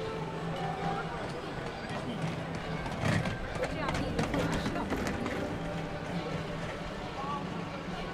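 Street ambience with a steady low hum, and passers-by talking and footsteps going by close at hand about three to five seconds in.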